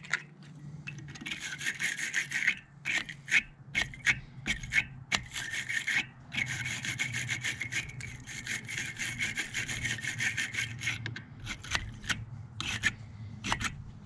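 A wire-bristle battery terminal cleaning brush is twisted back and forth inside a battery cable clamp: a rapid, rasping scrape that comes in several bouts with short pauses. It is scrubbing the clamp's dull copper back to bright, clean metal.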